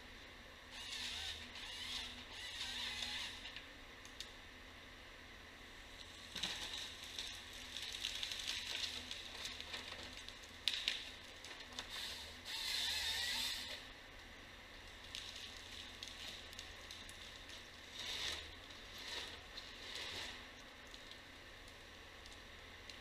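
Timberjack 1470D forestry harvester heard from a distance, its head feeding and delimbing a spruce stem: bursts of rasping mechanical noise come and go, each a second to a few seconds long, over a low steady engine hum. A single sharp crack is heard a little before the middle.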